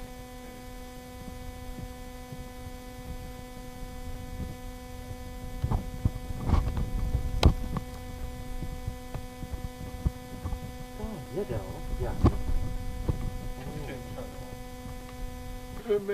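A steady electrical hum, several even tones stacked one above another, over a low rumble, with a few sharp clicks in the middle, the loudest about seven and a half seconds in.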